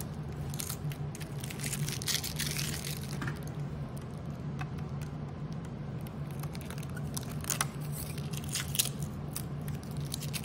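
Clear plastic film crinkling and crackling as it is peeled and handled against a computer's plastic housing, with a few sharp plastic clicks near the end, over a steady low hum.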